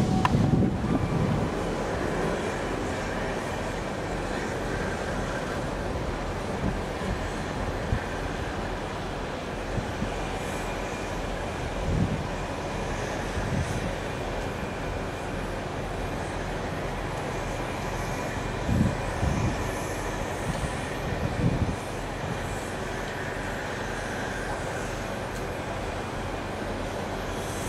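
Midland 4F 0-6-0 steam locomotive running slowly at low speed: a steady hiss with a few scattered low thuds.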